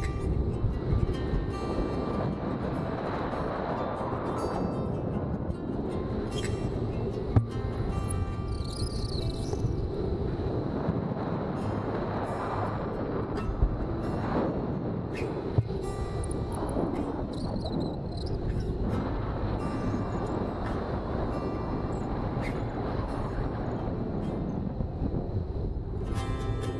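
Airflow rushing steadily over an action camera's microphone during a paraglider flight, with a few sharp knocks from the harness or camera mount.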